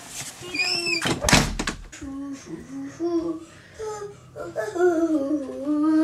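A front door swinging shut with a single heavy thud about a second and a half in, just after a brief high-pitched voice. A voice follows with wordless, wavering sounds through the last few seconds.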